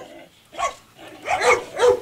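Young dogs giving a few short barks while wrestling roughly: six-month-old Dutch Shepherd puppies ganging up on a Belgian Malinois.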